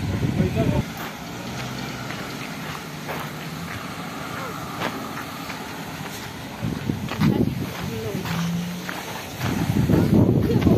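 Roadside traffic and street sound: a car passes on the tarmac road while faint voices carry. Wind buffets the microphone at the start and again near the end.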